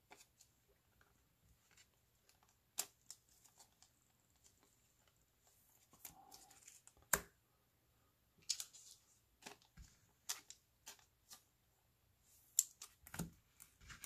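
Faint handling of baseball trading cards on a tabletop: scattered light clicks and taps as cards are picked up, flipped and slid into place, spaced irregularly with quiet gaps between.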